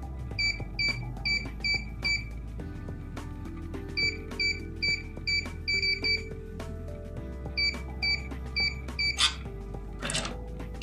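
Electronic keypad lever lock beeping once per key press as a code is entered: three runs of about five short, identical high beeps, with a short rasping noise just after 9 seconds. Background music plays underneath.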